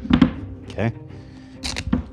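Short, rustling handling noises as adhesive tape is worked around a plastic jello container, in a few separate strokes, the longest near the end.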